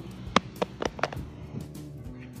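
A cased smartphone hitting a concrete path and bouncing: four sharp clattering knocks in quick succession, the first the loudest and each following one a little sooner, with background music underneath.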